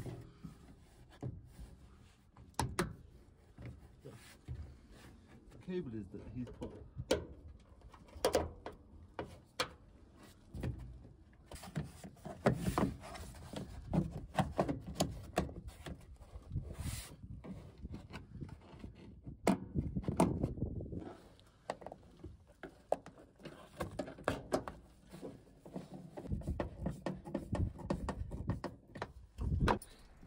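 A plastic van interior trim panel being handled and pushed into place against the metal body: scattered clicks, taps and knocks of plastic, with quiet talk between two people.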